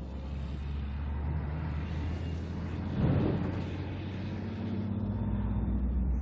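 Diesel freight locomotive running as a train passes: a steady low engine drone that swells about three seconds in and shifts slightly higher in pitch near the end.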